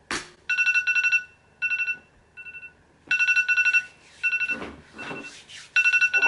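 A single click, then a phone alarm ringtone from the music video's sound through laptop speakers: a two-tone electronic ring pulsing in repeated short bursts while the sleeper lies in bed.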